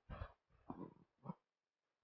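Faint, low mumbling or grunting from a man's voice, three short bursts in the first second and a half, too quiet to make out as words.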